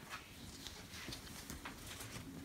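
Faint, irregular light taps and paper rustles from hands handling the glossy pages of an open magazine.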